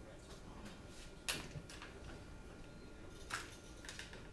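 Small metal hardware and tools handled on a workbench mat: a sharp click about a second in and a lighter one near the end, over faint room noise.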